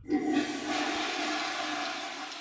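Toilet flushing: a steady rush of water that starts suddenly and runs on, easing slightly near the end.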